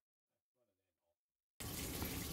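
Near silence, then a steady, even hiss of background noise starts suddenly near the end.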